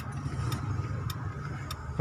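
Maruti Suzuki Swift petrol car idling with a steady low hum, with three light ticks evenly spaced a little over half a second apart.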